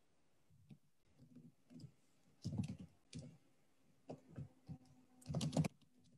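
Faint computer-keyboard typing picked up over a video call: scattered bursts of key clicks, busiest near the end.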